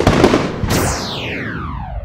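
Cartoon firework sound effect: a crackle, then a sharp burst about two-thirds of a second in that trails off into a long falling whistle.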